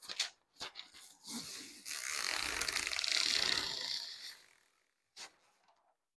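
Backing sheet being peeled off clear hot-fix rhinestone transfer tape: a steady crackling rip of adhesive separating for about two seconds, after a few light handling taps. One more tap near the end.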